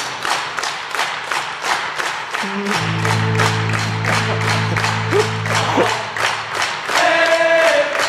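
Indoor percussion ensemble playing: the drumline beats a steady pulse of hits, about three to four a second, and a low sustained chord from the front ensemble's electronics enters about three seconds in and fades out near six seconds.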